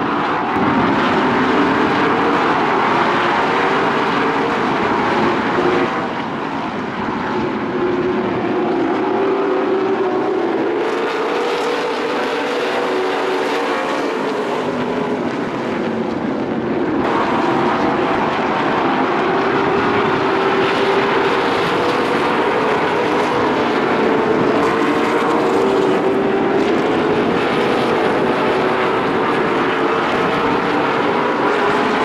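A pack of late model stock car V8 engines running at racing speed on an oval, a continuous drone of several overlapping engine notes that waver in pitch. The sound changes character abruptly twice, about a third and halfway through.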